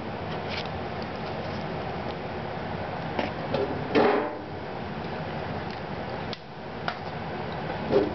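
Double-shafted 120 V synchronous fan motor burning out: its shorted windings crackle and sizzle steadily, with sharp snaps of arcing. A loud, buzzing arc comes about four seconds in.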